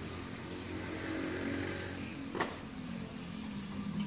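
Electric swing-gate openers running as two large metal gate leaves swing open: a steady motor hum, with a sharp click about two and a half seconds in.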